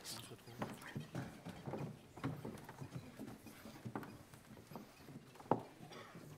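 Faint room sounds of people settling into their seats on a stage: scattered footsteps and knocks on a wooden floor, with low murmured voices in the background.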